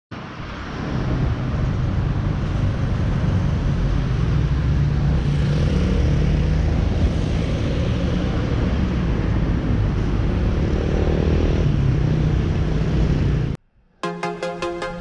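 Road traffic going by: a steady mix of engines and tyre noise with a low hum. It cuts off suddenly near the end.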